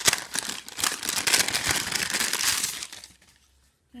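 Gift wrapping crinkling and rustling as it is pulled open by hand, stopping about three seconds in.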